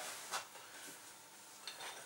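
Kitchen knife blade scraping finely chopped garlic across a plastic cutting board: one short scrape about a third of a second in, then a few faint, light scrapes near the end.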